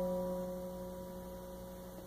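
Electric guitar's last note of the song left to ring out, one held pitch slowly fading away.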